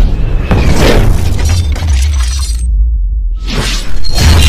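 Cinematic intro sound effects: shattering, crashing hits over a heavy bass music bed. About three seconds in the high end drops out briefly, then a loud hit lands near the end.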